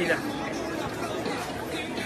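Background chatter: several people talking at once at a moderate level, with no single clear voice.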